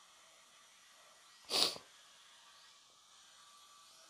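A single short, sharp burst of a person's breath about one and a half seconds in, over faint room hiss.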